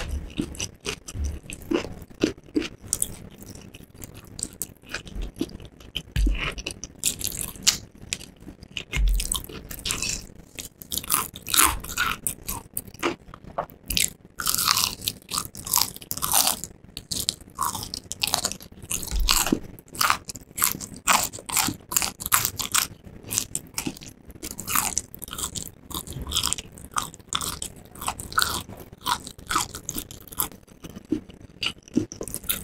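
A mouth biting and chewing crispy fried chicken. The battered crust crunches and crackles irregularly, getting busier from about ten seconds in.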